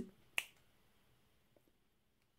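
A single sharp finger snap about half a second in.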